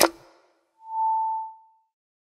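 A single steady synthesized tone, mid-pitched and held for about a second, swelling in and fading out: a logo sting. Just before it, the tail of the preceding voice-and-music passage dies away.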